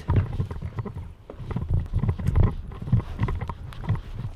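Footsteps walking on concrete: a run of irregular low thuds, a few a second.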